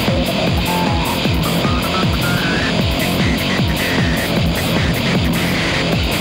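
Loud live band music, with a drum kit playing a fast, steady beat of low drum hits under a dense wash of cymbals and other instruments.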